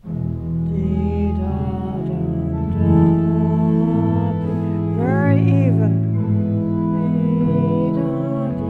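Organ playing sustained chords with a moving line above, starting suddenly at full volume.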